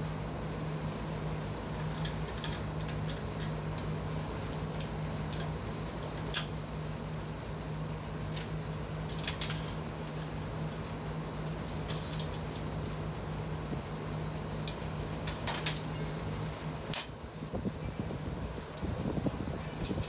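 Scattered light metallic clicks and clanks as sheet-steel tool cart parts and loose bolts are handled, the loudest about a third of the way in. A steady hum runs underneath and stops near the end.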